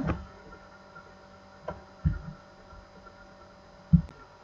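Steady, faint electrical hum with several steady tones, broken by two short low thumps, one about two seconds in and a louder one near the end.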